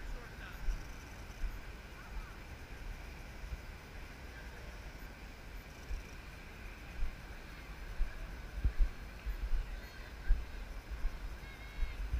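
Quiet outdoor field ambience: uneven low rumbling bumps of wind on the microphone, with faint distant voices.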